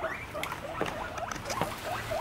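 Guinea pigs giving faint, short squeaks, with a few light taps and rustles as they move about the run.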